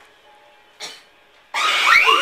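A faint steady room sound with a short noise just under a second in, then, about one and a half seconds in, a sudden loud, shrill scream that rises and falls in pitch.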